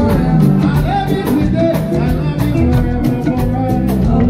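Live soul band performing: drums, bass and keyboard under a singing voice, with cymbal strokes keeping a steady beat.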